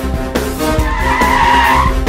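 Film background score with a steady low pulse; about a second in, a high wavering screech joins it and cuts off just before the end.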